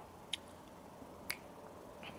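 Two faint, sharp clicks about a second apart over quiet background.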